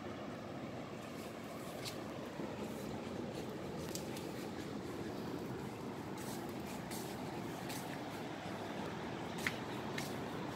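Steady rushing outdoor background noise, with a few faint short ticks.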